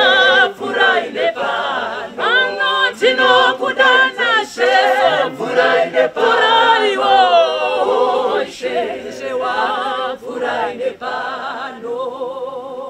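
A mixed a cappella church choir singing, a woman's lead voice with vibrato carried over the group's harmonies.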